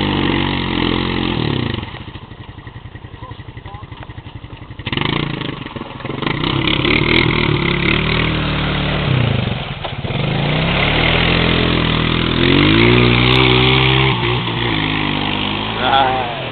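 ATV engine running in deep mud: it drops to a low idle for a few seconds, then is revved again and again, its pitch rising and falling.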